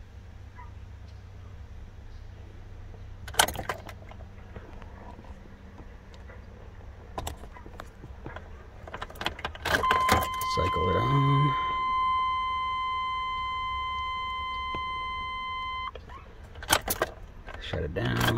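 Ignition key clicks off and on in a 1998 GMC K1500. About ten seconds in, the dash warning chime sounds one steady tone for about six seconds and cuts off suddenly. There are a couple more key clicks near the end.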